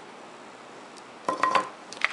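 A heavy plastic watercolour palette being handled and set down on a table: a short cluster of light plastic knocks with a brief ring over a second in, and a click at the end, against quiet room hiss.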